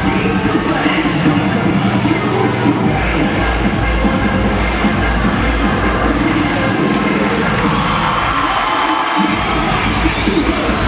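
A cheerleading routine's music mix played loud over an arena sound system, with a pounding beat, while the crowd cheers and screams over it. The bass drops out briefly near the end.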